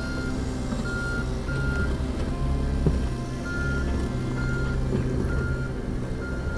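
Mini excavator's diesel engine running steadily while its travel alarm beeps about once a second as the machine tracks, with a short pause in the beeping midway.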